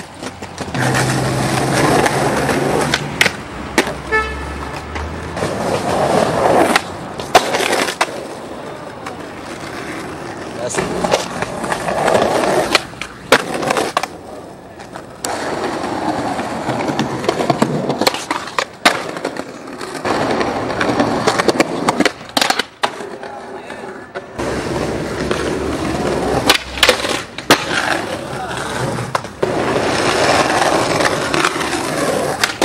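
Skateboard wheels rolling on concrete and paving slabs, a steady rumble broken again and again by sharp cracks as boards are popped, land and clatter. The sound comes from a string of short clips that cut abruptly from one to the next.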